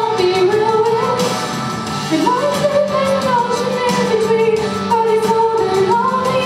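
A woman singing solo into a microphone, a slow melody with long held notes that glide between pitches, over steady lower accompanying tones.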